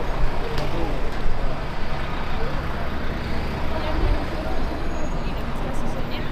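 Busy city street traffic: a steady low engine rumble from idling and passing vehicles, with scattered voices of passers-by.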